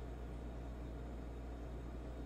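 Quiet room tone between spoken phrases: a steady low hum with faint hiss, and no distinct events.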